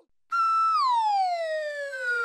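Cartoon falling-whistle sound effect: a bright whistle-like tone starts about a third of a second in, holds one high pitch briefly, then glides steadily downward.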